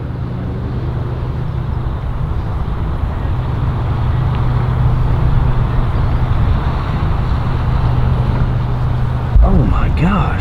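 Motorboat engine running steadily at low speed, a low hum that grows louder as the boat approaches. A sudden low thump near the end.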